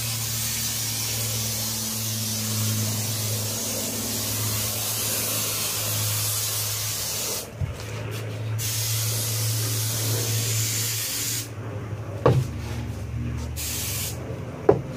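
Aerosol can of spray adhesive hissing in long, steady sprays onto foam insulation. There is a short break a little past halfway, and the spray stops a couple of seconds before the end. A single knock comes near the end, over a steady low hum.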